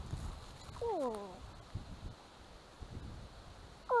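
Soft footfalls on a dirt track, with a single falling, moaning animal call about a second in and a louder wavering call starting at the very end.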